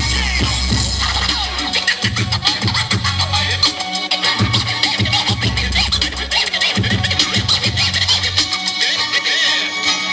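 A DJ scratching a record on a turntable over a beat played loud through a club PA: quick back-and-forth scratch strokes over a heavy bass line that cuts in and out several times.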